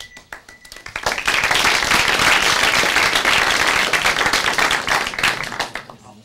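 Audience applauding: a few scattered claps at first, swelling into dense clapping about a second in and tailing off near the end.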